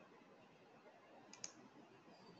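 Near silence with faint room noise, broken by two quick faint clicks close together about one and a half seconds in.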